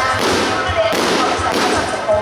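Loud stage music with a steady bass beat, overlaid by a dense crackling noise.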